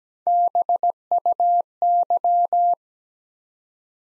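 Morse code practice tone at 17 wpm, a single steady pitch near 700 Hz keyed in dots and dashes, sending the letters B, U, Y (dah-dit-dit-dit, dit-dit-dah, dah-dit-dah-dah) in three groups with short gaps between them.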